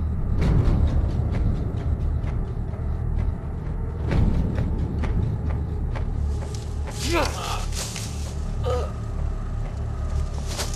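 Film-trailer soundtrack: a steady low rumble with scattered hits and whooshes. A person's voice cries out about seven seconds in, with a shorter vocal sound shortly after.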